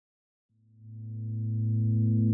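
A single low synthesizer note fades in about half a second in and holds one steady pitch, growing louder: the opening of an electronic song.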